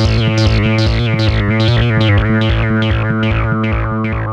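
Korg MS-20 analog synthesizer playing a fast repeating pattern of about four plucky notes a second, each with a bright filtered attack that quickly closes, over a steady low drone. The sound starts to fade out near the end.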